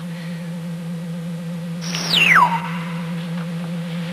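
Electronic sci-fi sound effect: a steady low machine hum, with a single high whistle about two seconds in that glides quickly down in pitch and holds for a moment on a lower tone.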